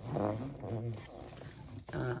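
A person's low, drawn-out wordless voice sound, loudest for about the first second and then trailing off quieter.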